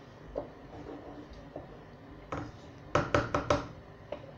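Kitchenware knocking: a few faint knocks, then four sharp knocks in quick succession about three seconds in.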